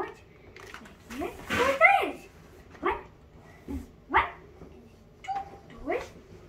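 Children's excited wordless squeals and yelps, each rising sharply in pitch: a loud cluster about one and a half seconds in, then three short single yelps spaced about a second apart.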